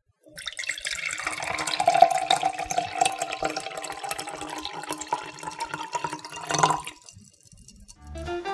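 Red wine poured from a bottle into a wine glass, the liquid splashing into the glass; the pour starts just after the beginning and stops suddenly about seven seconds in.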